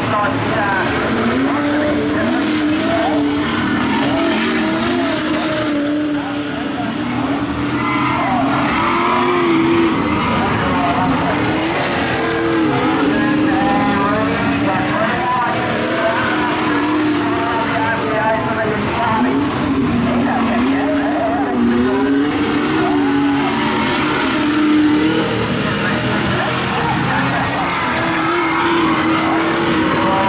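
A pack of AMCA modified race cars with V8 engines racing round a dirt oval, their engines rising and falling in pitch as they go through the turns.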